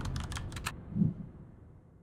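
Title-sequence sound effects: a quick run of about six sharp, typing-like clicks over a fading low rumble, then a single low thump about a second in that dies away.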